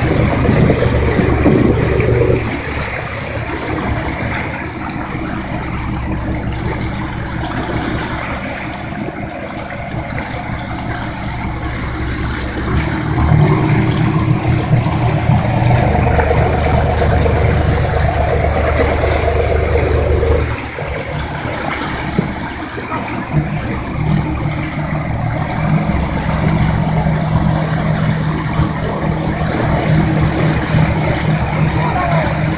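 Motorboat engine running under way, with water rushing in the wake; the engine's low drone shifts in strength several times, dropping a couple of seconds in, swelling again near the middle and falling off about two-thirds of the way through.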